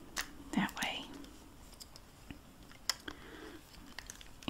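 Small plastic clicks and taps as batteries are seated in a motorized toy mouse and its plastic back cover is fitted on by hand. There are a few separate clicks, the sharpest about three seconds in.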